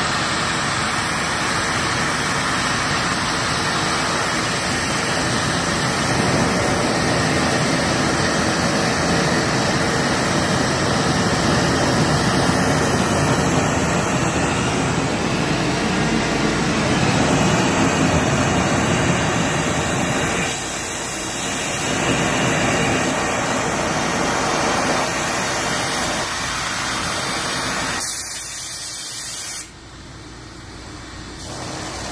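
Glassblowing torch burning propane with oxygen from a compressed-oxygen system: a loud, steady hiss of the flame whose strength shifts as the flame is changed between settings. It dips briefly about two-thirds of the way through and falls away sharply at the very end.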